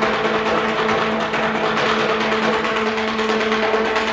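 Percussion ensemble playing a sustained passage of very rapid rolled strokes, with a few steady pitches held under them.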